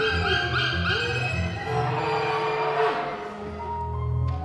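Live contemporary chamber sextet of two violins, viola, double bass, piano and clarinet playing: a quick run of short swooping glides up high in the first second or so, over sustained low notes, with a slower sliding note about three seconds in.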